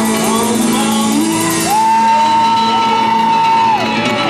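Live rock band playing, with electric guitar and drum kit. Partway through, a male singer scoops up into a long high shouted note, holds it for about two seconds, and cuts it off just before the end.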